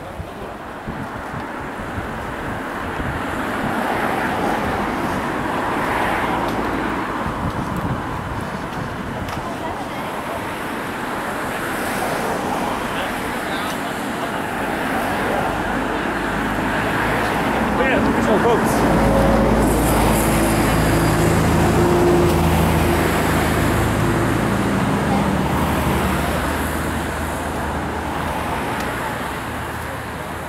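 Steady outdoor background noise, with a low engine hum that sets in about two-thirds of the way through and lasts around ten seconds.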